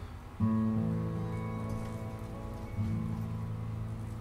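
Acoustic guitar playing the closing chords of a song: one chord strummed about half a second in and another near three seconds, each left to ring and fade.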